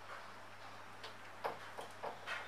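Marker pen on a whiteboard writing a digit: three faint ticks and short scrapes in the second half, over a low steady hum.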